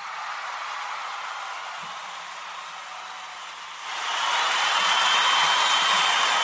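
A steady hiss of static-like noise that steps up louder about four seconds in, where a faint high whistle joins it.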